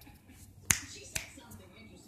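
Two sharp clicks about half a second apart, the first the louder.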